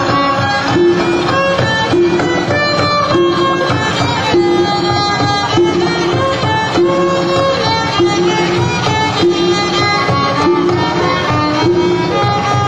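Mah Meri Jo'oh dance music: a fiddle playing a melody over a short low figure that repeats about every three-quarters of a second, steady in level throughout.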